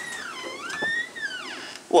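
Australian Shepherd–border collie cross puppy whining: one long high-pitched whine that dips, rises again and then falls away, lasting about a second and a half.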